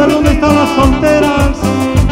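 Live cumbia band playing an instrumental passage with no vocals: electronic keyboard melody over bass and a steady, even percussion beat.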